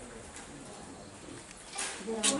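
A bird cooing faintly in the background during a short lull in speech.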